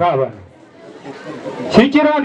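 Speech only: a voice talking briefly at the start and again near the end, with faint background chatter in the pause between.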